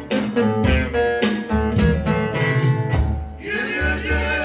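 Live folk ensemble: a bağlama (long-necked lute) picking a melody over steady strokes of darbuka goblet drums and a davul bass drum, with singing coming in near the end.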